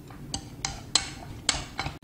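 A metal spoon clinking against a ceramic bowl while tossing a salad: about half a dozen sharp, separate clinks.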